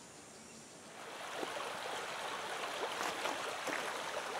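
Shallow river running over rocks: a steady rush of water with small splashing ticks that comes in about a second in, after a faint quiet start.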